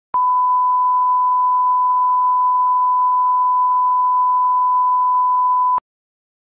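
Broadcast line-up test tone accompanying colour bars: a single steady beep of one pitch lasting about five and a half seconds, switched on and off abruptly with a click at each end.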